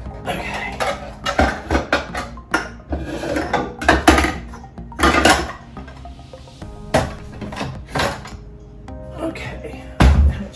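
Dishes and glassware clattering and clinking in a kitchen cupboard while a glass measuring cup is taken out, a run of short knocks with the loudest about four seconds in. Music plays underneath.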